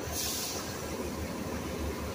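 City transit bus engine running at close range with a low, steady rumble; about the start comes a short hiss of compressed air from the bus's air system.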